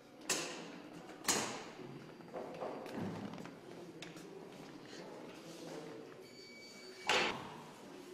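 Three sharp bangs with an echoing tail in a hard, tiled room: two close together in the first second and a half and one near the end, with softer knocks in between.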